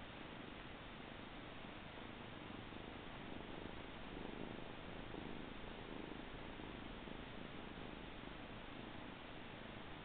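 Siamese kitten purring steadily close to the microphone, swelling a little louder midway.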